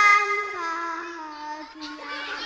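Children singing a song together into a microphone, holding long notes that step down lower through the phrase.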